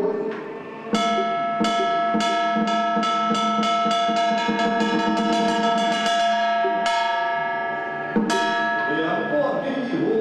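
Taoist ritual bell struck in a quickening roll, the strokes running together under a long bright ring, then two more single strokes. Chanting comes back near the end.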